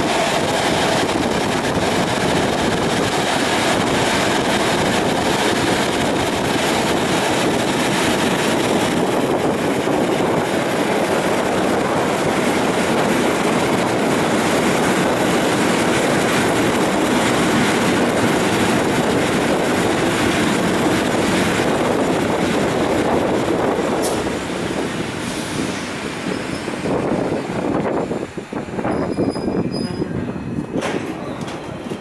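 EN57 electric multiple unit running at speed, the steady rumble of its wheels on the rails heard from inside the car. About 24 seconds in it slows and grows quieter, with a few clicks and a faint high squeal as it comes to a stop near the end.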